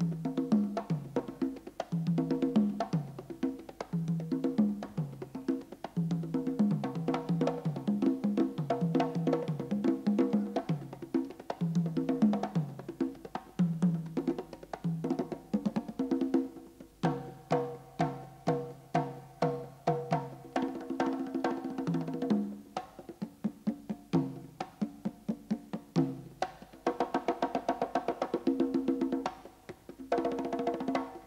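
Pair of congas played by hand in a percussion solo: quick rhythmic patterns of struck tones that move between two or three pitches, with a run of evenly spaced single strokes about halfway through.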